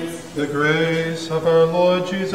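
A man's voice chanting a line of the Orthodox Divine Liturgy, held on near-level notes with small steps in pitch, starting about half a second in after the choir's chord falls away.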